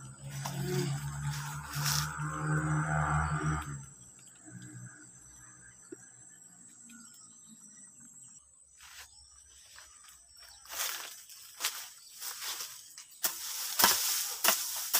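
A short-handled hand hoe scraping and chopping into dry, leaf-strewn soil in a run of short strokes during the last few seconds. It comes after a steady low hum in the first few seconds.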